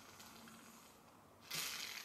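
One short, hard sniff of air drawn up a drinking straw pushed into a nostril, about a second and a half in, after a quiet stretch.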